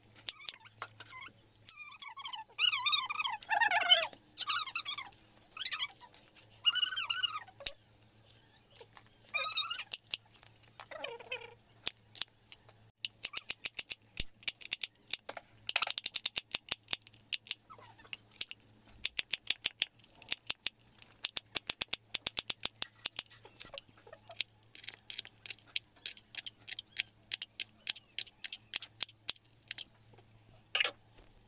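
Knife chopping onions and green chillies on a wooden cutting board: rapid short taps, several a second, through the second half. In the first half come a few short wavering calls, like an animal's.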